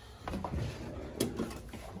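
Steel workbench drawer being pulled open on its slides, with one sharp click a little over a second in.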